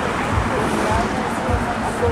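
Indistinct voices of people talking in the background, over a low, uneven rumble.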